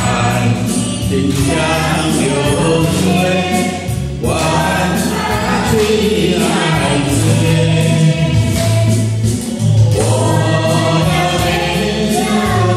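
A man singing a song into a handheld microphone over a karaoke backing track with a steady beat.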